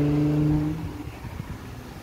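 Supercharged Audi S4 V6 with an AWE Touring exhaust just after it has gone past. Its engine note holds at a lowered pitch and fades away within about a second.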